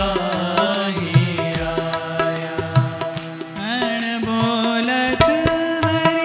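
A man singing a devotional chant in a held, gliding melody, with sustained instrumental accompaniment and a drum stroke roughly once a second.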